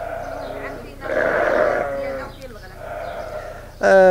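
Sheep bleating, three separate wavering bleats, the loudest about a second in. A man's voice starts just at the end.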